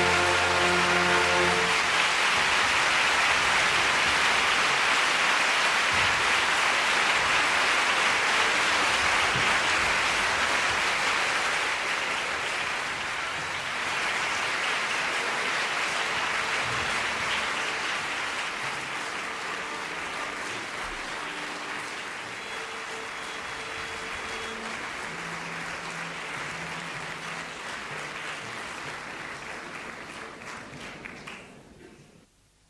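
Live opera audience applauding. The orchestra's held closing chord cuts off just over a second in. The applause stays loud for about twelve seconds, then slowly dies down.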